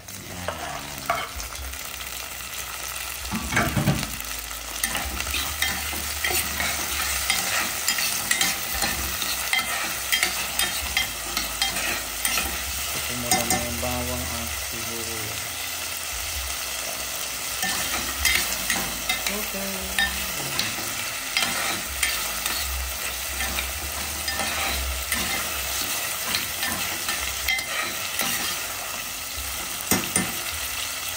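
Chopped tomato, onion and garlic sizzling in hot oil in a stainless steel pot while being sautéed, with a metal spoon or fork stirring and scraping and frequent clicks of the utensil against the pot.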